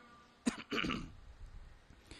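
A man briefly clearing his throat close to the microphone: a sharp click about half a second in, then a short rasp, during a pause in the reading.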